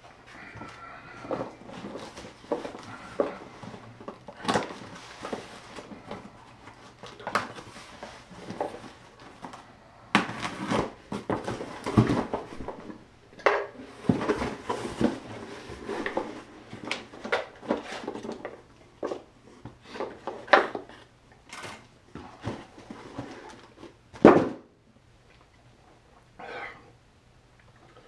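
Cardboard box being opened and handled: rustling and scraping of the cardboard flaps with scattered clicks and knocks, and one louder knock near the end.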